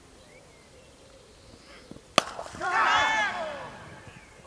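A single sharp crack of a cricket bat striking the ball about two seconds in, followed about half a second later by a man's loud shout lasting about a second.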